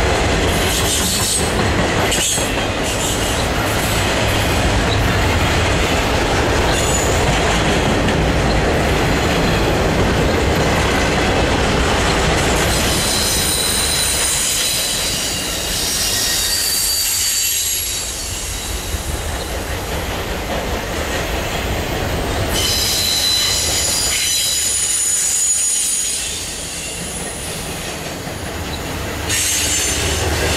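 Freight cars of an intermodal train carrying highway trailers rolling past close by, with a steady rumble and clatter of steel wheels on rail. The wheels squeal high-pitched twice, from about halfway to a few seconds later and again near the end.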